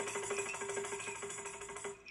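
Music played through a pair of Wigo Bauer 25 cm ferrite-magnet speakers driven by an EL84 push-pull tube amplifier: one held note under fast, even repeated strokes, cutting off just before the end.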